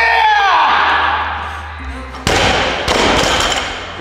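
A man cries out, then about two seconds in a loaded barbell with rubber bumper plates is dropped from overhead onto the gym floor: a sudden crash, a second bounce a moment later, and a ringing tail in the hall.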